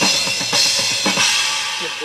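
Acoustic drum kit being played: a few loud strikes with crash cymbals, then the cymbals ring on and fade away.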